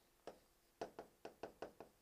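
About seven faint, quick taps of a stylus tip against the glass of an interactive touchscreen display as handwriting is written on it.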